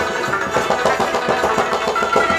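Instrumental passage of Pashto folk music: fast, evenly repeated rubab plucking with tabla accompaniment.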